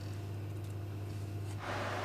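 Quiet kitchen background: a steady low hum, with a soft rushing noise coming in near the end.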